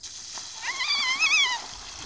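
A single high, wavering cry lasting about a second, rising and falling in pitch, over quiet outdoor background.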